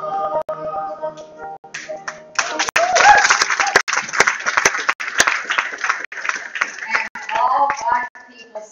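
A piece of music fades out about two seconds in, then a congregation claps and applauds for about five seconds, with a few voices mixed in.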